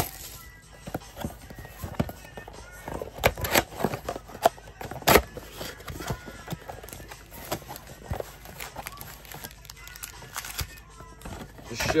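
Cardboard mega box being opened and its card packs pulled out by hand: scattered taps, clicks and scrapes of cardboard and foil packs, with a few sharper snaps about three and five seconds in.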